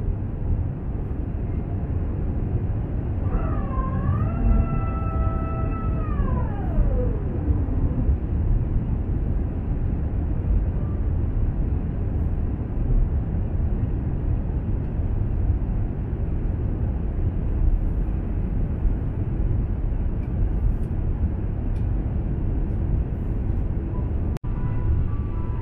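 Jet airliner cabin noise on final approach: a steady, deep rumble of engines and airflow. About three seconds in, a mechanical whine of several tones dips, holds level, then glides down in pitch and fades out by about seven seconds.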